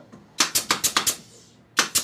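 Hammer tapping a wooden corner block into a joint of a wooden bed frame: a quick run of about six sharp taps in the first second, then two more near the end.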